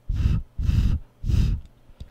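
Three short puffs of breath blown straight onto a Deity V-Mic D3 Pro shotgun microphone, each a gust of wind noise heaviest in the low end, with the microphone's 150 Hz low-cut filter switched on.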